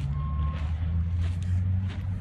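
A large vehicle's engine running with a steady low hum that grows slightly stronger after the first second. One short, high beep comes just after the start.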